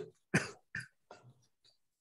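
A man clearing his throat in three short bursts, each fainter than the last.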